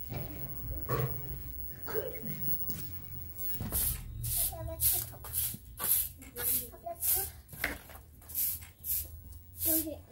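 Straw broom sweeping a tiled floor in quick, even strokes, about two a second, each a short brushing swish, starting a few seconds in.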